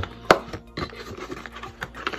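Small cardboard box being opened by hand, its flaps scraping and rubbing, with one sharp click about a third of a second in and lighter scrapes and ticks after as the contents are handled.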